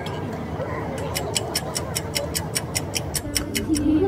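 Rapid, even clock-like ticking, about six or seven ticks a second, starting about a second in and lasting a little over two seconds, over quiet café chatter.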